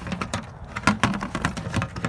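A string of irregular light clicks and knocks from handling a galvanized metal sap bucket with a plastic lid.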